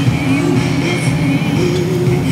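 Inboard tow-boat engine running steadily as it pulls a skier, with music with singing playing at the same time.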